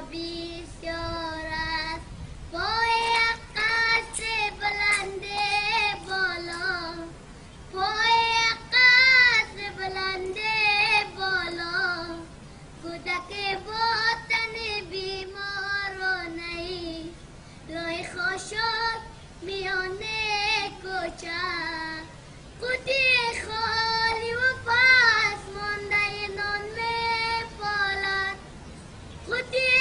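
A young boy singing solo in a high voice, with no instruments heard, in phrases of ornamented, wavering notes separated by short breaths.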